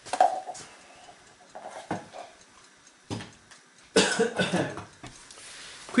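A person coughing once, about four seconds in, after a few short knocks.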